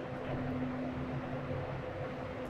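Steady low background hum and hiss of room tone, with no distinct events.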